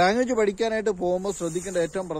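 A man talking, with no other sound standing out.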